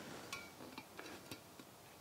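A few faint, light clicks and ticks, about four in the first second and a half, as the alignment string's support is adjusted by hand to lower the string.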